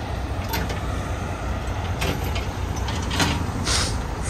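Heavy truck's diesel engine running steadily with a low rumble, with a few short hisses about two, three and nearly four seconds in.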